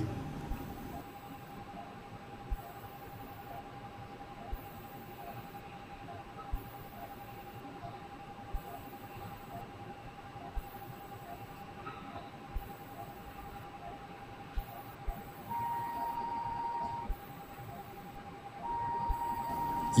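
Quiet operating-theatre equipment sound: a steady, high electronic tone with faint ticks about every two seconds. A slightly higher, louder tone joins it twice near the end, each time for about a second and a half.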